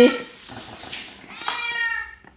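Domestic cat meowing: one short, high-pitched call near the end, just after a sharp click.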